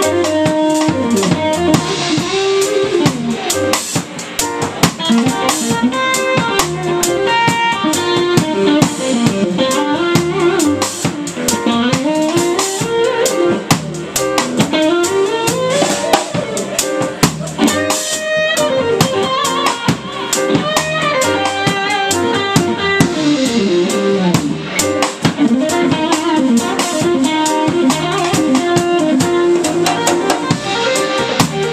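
Stratocaster-style electric guitar playing a solo of fast runs of notes that climb and fall, over a live band's drum kit with busy cymbal and snare strokes and an upright bass.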